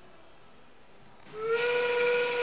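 FRC field's endgame warning sound, a steam-whistle blast, comes in about a second and a half in and holds one steady pitch: the signal that thirty seconds are left in the match.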